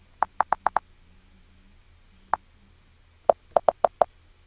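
Computer keyboard keystrokes clicking: a quick run of five in the first second, a single one about two seconds in, then four in quick succession near the end.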